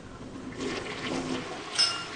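Toilet flushing: a rush of water starts about half a second in, with a brief sharp clink near the end.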